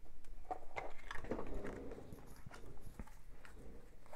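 Faint scattered taps and light rustling of fallen cards being gathered up from the floor by hand.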